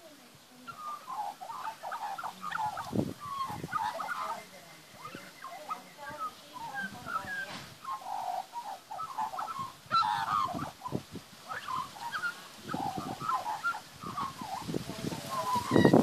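Young Australian magpie singing: a long, rambling run of short warbling notes that jump up and down in pitch, with barely a pause.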